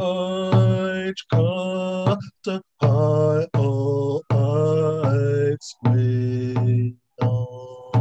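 A man singing a chant in held, pitched phrases of about a second each, with short breaks between, accompanied by a hand drum.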